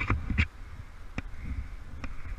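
A climber's hands, shoes and gear scraping and clicking against granite: a few short sharp clicks and scrapes, a cluster right at the start and about half a second in and one more a second later, over a low steady rumble.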